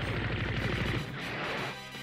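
Rapid gunfire sound effects from an animated show's soundtrack, mixed over background music; the firing stops shortly before the end.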